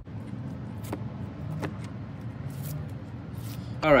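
A metal can being handled and turned on a tabletop: two small sharp clicks about a second and a second and a half in. Under them runs a steady low rumble.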